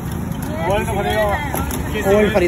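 A person's voice speaking briefly over a steady low background rumble.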